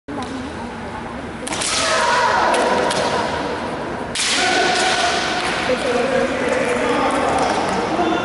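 Kendo fencers shouting kiai. Long, loud yells break out suddenly about one and a half seconds in and again about four seconds in, echoing around a large hall. A few sharp cracks of bamboo shinai striking come between them.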